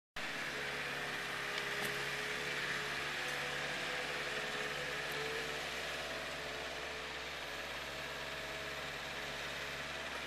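Engine of a truck-mounted forklift running steadily as it moves pallets of sod, a constant hum and drone with no sudden sounds.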